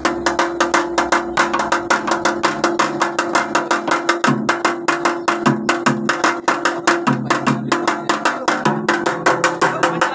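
A plucked-string drum, a metal drum body with a cord pulled taut from its head to the player's mouth, struck with a small stick in a fast even rhythm of about six sharp strokes a second. Under the strokes a ringing note holds, and a lower note shifts in and out as the cord's tension changes.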